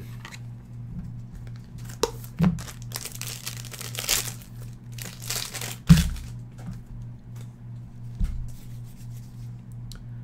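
Plastic and foil crinkling in a few bursts as sleeved trading cards are handled over opened foil pack wrappers, with a short knock about six seconds in and a low steady hum underneath.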